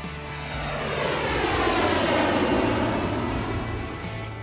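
Airplane flyby sound effect: engine noise that swells to a peak about halfway through and then fades away, over soft background music.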